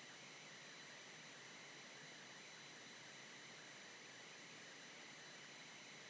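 Near silence: a steady, faint background hiss of the recording.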